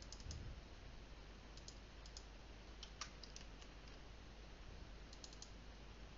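Faint clicks of a computer mouse, several coming in quick pairs or threes, over a low steady room hum.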